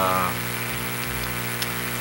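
A drawn-out hesitation vowel trails off, then a steady low hum of room tone carries through the pause.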